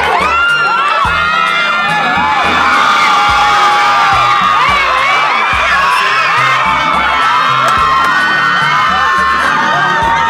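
A crowd cheering, shouting and whooping loudly throughout, many voices overlapping, with a music bass line underneath.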